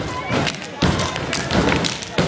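Step team stomping and clapping a fast step routine on a stage, with sharp thuds roughly three to four times a second, over crowd voices.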